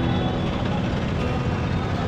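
Busy street ambience: vehicle engines running, with a crowd of voices talking.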